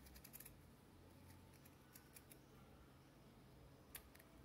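Faint snips of scissors cutting grosgrain ribbon, trimming the tail to a rounded end: a quick cluster of small clicks at the start, a few more around the middle, and a sharper snip at the end.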